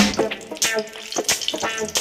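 Dry red chilli sizzling in hot oil in an aluminium kadai, a steady hiss with light crackles, under quieter background music.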